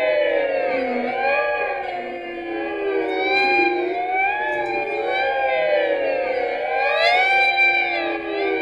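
Experimental electric guitar improvisation: several layered sustained tones sliding up and down in pitch in slow overlapping arcs, with a siren-like sound, and a louder swell near the end.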